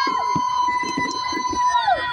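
A spectator's long, high-pitched held shout on one steady note, dropping in pitch just before the end. Crowd chatter and cheering continue underneath.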